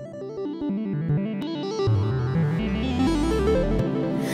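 Instrumental opening of a song, with stepping keyboard notes and a bass line that comes in strongly about two seconds in, the music gradually getting louder.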